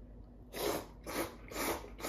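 Tsukemen noodles being slurped from the dipping bowl in a run of short sucking pulls, about two a second, starting about half a second in.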